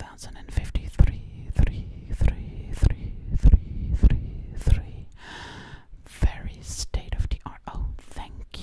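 Gloved hands rubbing and squeezing together around a light, close to the microphone, in strong, even strokes a little under two a second for several seconds, then looser, irregular rustling.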